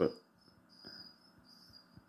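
A cricket chirping: a thin, high trill that comes in short bursts, each about half a second long.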